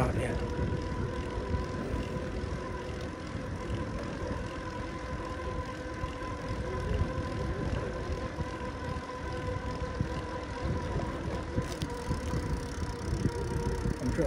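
Wind and tyre noise from a road bicycle riding on a paved road: an even low rumble, with a faint steady whine over it.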